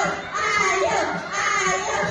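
A group of children's voices, several kids calling out and shouting over one another.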